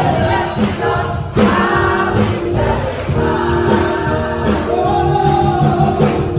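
Gospel choir singing in several parts, holding chords that change every second or so, with a woman leading on a microphone. The choir comes in strongly about a second and a half in.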